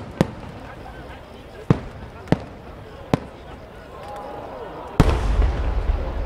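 Large 10-gō (about 30 cm) aerial firework shell: several sharp cracks of small bursts on its way up, then about five seconds in the deep boom of the main shell bursting, followed by a long low rumble.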